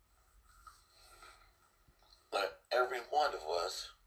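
Speech: after a quiet stretch of about two seconds, a man's voice starts speaking.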